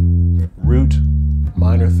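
Electric bass guitar playing single sustained notes one after another, the root, minor third and fifth of a D minor triad (D, F, A). One note dies away about half a second in, and two more follow, each ringing for about a second, with a man's voice briefly naming them over the notes.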